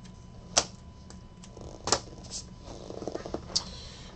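Sharp plastic clicks and taps from a trading card being handled with a clear hard plastic card case: two louder clicks, about half a second in and near two seconds, with lighter ticks between and a quick run of small ticks about three seconds in.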